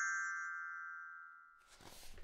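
A glockenspiel note ringing and fading away after a single strike: the cue to turn the page. It dies out after about a second and a half, leaving a faint rustle near the end.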